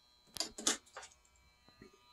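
Spring-loaded alligator clip being squeezed open and pulled off a battery terminal: a quick cluster of faint metal clicks and rattles about half a second in, then a few lighter ticks of the clip and its wire.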